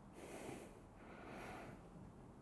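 Near silence: faint room tone with two soft breaths.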